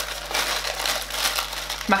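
Tissue paper in a cardboard box being handled, rustling and crinkling in quick, irregular crackles.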